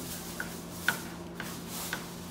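Kitchen knife slicing hotdogs on a plastic cutting board: a few short knocks of the blade against the board about half a second apart, the loudest about a second in, over a steady low hum.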